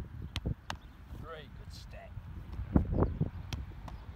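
Wind buffeting the microphone in low gusts, with a few sharp knocks; the last, about half a second before the end, fits a football smacking into a goalkeeper's gloves as it is caught.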